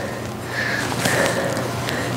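A person breathing while squatting and moving about, with no speech.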